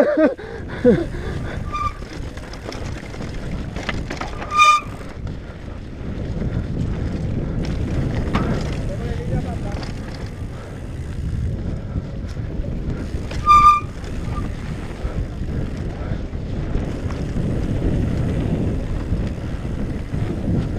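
Wind buffeting a helmet-mounted camera's microphone, mixed with the tyre rumble and rattle of a mountain bike descending a dirt trail; it swells louder with speed around 8 and 18 seconds in. Two brief high squeals cut through, about 5 and 14 seconds in.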